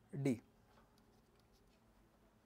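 A man says one short word, then faint scratching of a stylus on a tablet as a tick mark is drawn.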